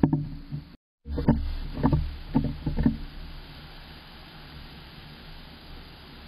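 A squirrel moving about inside a wooden nest box, its claws and body knocking and scraping against the wood close to the microphone. The knocks come irregularly in the first three seconds, broken by a brief dropout in the audio about a second in, and then settle to a faint steady hiss.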